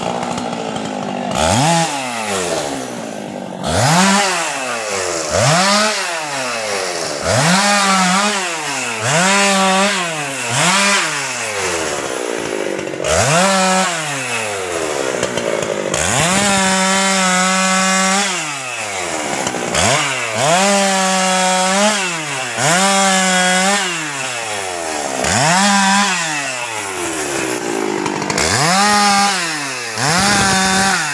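Husqvarna 390 XP two-stroke chainsaw revved up and let back down over and over, about once a second, with a few longer stretches held at full throttle while it cuts through a teak log.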